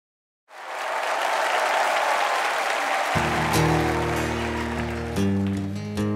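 Audience applause comes in about half a second in and fades away, and about three seconds in a steel-string acoustic guitar starts strumming chords with full low strings, opening the song.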